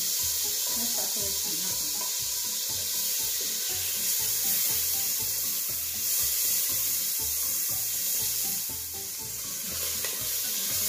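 Red and green chilli sizzling steadily in hot butter in a stainless steel pot while a spoon stirs it, scraping and knocking lightly against the pot.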